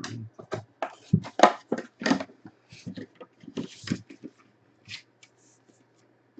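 Trading cards in hard plastic holders being handled and set into a wooden box: an irregular string of short clicks, taps and rustles that dies away about five seconds in.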